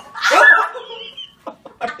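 A loud, shrill shriek from a person, lasting under a second and peaking about half a second in, followed by quieter talk.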